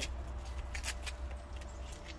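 Plastic bag and taped wrapping rustling and crackling in a few short crinkles as an egg-drop package is pulled open by hand, over a low steady rumble.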